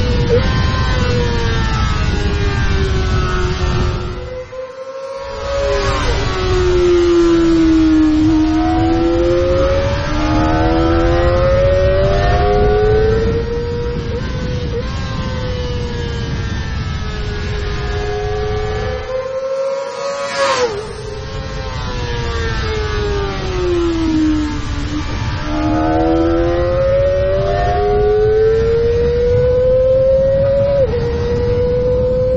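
Kawasaki Ninja ZX-25R's 250cc inline-four engine running at very high revs on track, its pitch climbing and falling again and again as the bike accelerates and slows through the gears. The sound drops out briefly twice, about four seconds in and around twenty seconds in.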